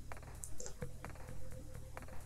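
A few faint computer keyboard and mouse clicks, including the Ctrl+D shortcut that duplicates a layer, over quiet background music.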